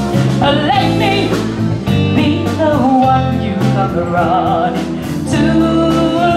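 Live soul band: a woman singing lead over electric guitars and drums, her voice bending and wavering on held notes.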